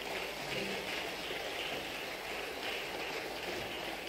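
A pause in the speech: a steady, even background hiss of the hall's room tone, with no voice.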